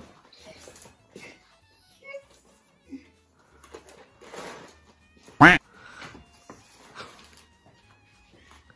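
Wrapping paper rustling and crinkling in soft, scattered bursts as a Christmas present is unwrapped. About halfway through comes one short, loud voiced cry that rises and falls.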